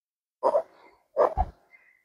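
Two short, breathy vocal sounds about three quarters of a second apart, the second with a brief low thump.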